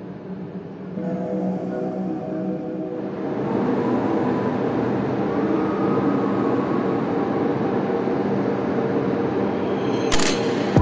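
Steady drone of a ship's machinery heard on deck: a low hum with several held tones. It grows louder about a second in and again after about three seconds.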